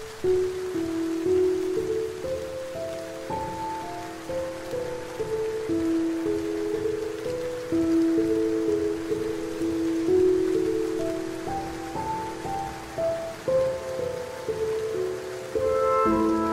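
Steady rain under slow, soft instrumental music of long held notes that change every second or so.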